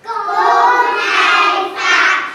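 A group of young children singing together in unison. The voices come in all at once and hold long notes, with a brief break near the end before the next line.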